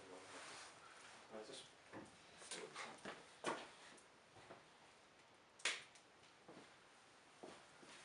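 Quiet room with a few faint knocks and clicks from equipment being handled, and one sharper clack a little past halfway.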